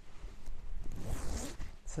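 Zipper of a knit zip-up sweatshirt being worked at the collar, with the fabric rustling and bumping against a clip-on lapel microphone; the rustle grows louder about a second in.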